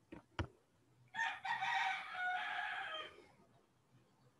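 A rooster crowing once, a call of about two seconds starting about a second in, preceded by a few key clicks.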